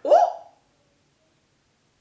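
A woman's brief vocal exclamation, about half a second long, with a pitch that swoops up and then down, followed by silence.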